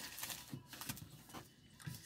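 Cardboard box and its packing being handled and opened by hand: a run of short rustles and scrapes.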